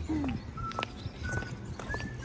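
Background music of short plucked notes over a light clicking, clip-clop-like beat, with a low hum beneath.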